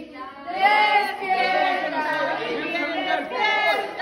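Several people singing together in an informal group, mostly women's voices overlapping, starting again about half a second in after a short break.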